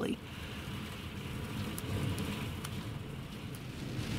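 Wind buffeting the microphone: a steady low rush of noise with a few faint clicks.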